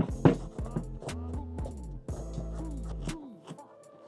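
Background music with a steady beat of drum hits over a repeating bass line.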